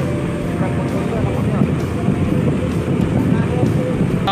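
Boat engines running over churning water and wind on the microphone, a steady loud rumble with faint voices underneath.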